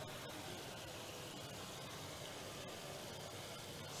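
Faint, steady sizzle of fried saganaki cheese in a hot skillet, with a few light clicks of a metal spatula against the pan.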